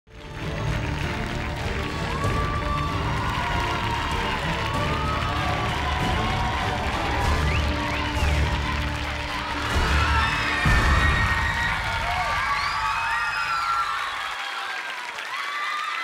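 Loud show music with a heavy bass beat under a studio audience cheering and shouting. The music stops about a second and a half before the end, leaving the cheering.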